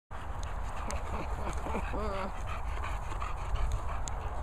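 Dogs panting while they play, with a short wavering vocal sound about two seconds in. A steady wind rumble runs on the microphone underneath.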